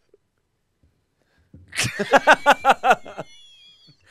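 A person laughing out loud: a quick run of 'ha' pulses, about six a second, starting about a second and a half in and trailing off near the end.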